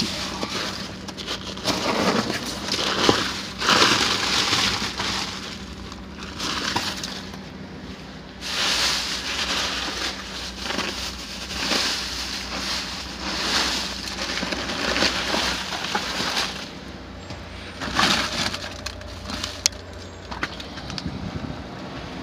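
Hands digging through snow-covered trash in a dumpster: irregular crunching of packed snow and rustling of plastic bags, paper and cardboard, coming in bursts every second or two. A faint steady low hum runs underneath.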